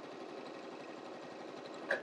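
Juki sewing machine running steadily, stitching a straight seam through several layers of cotton fabric.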